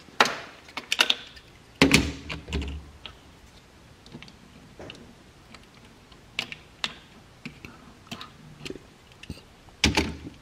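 Die-cast Hot Wheels cars clacking and clicking against the plastic track and starting gate as they are set into the lanes. A cluster of louder knocks comes in the first two seconds, then scattered single clicks, with another sharp knock at the very end.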